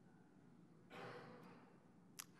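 Near silence: room tone, with one soft sigh-like breath about a second in.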